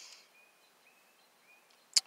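A quiet pause with faint, short bird chirps in the background, a soft breath-like hiss at the start and a single sharp click near the end.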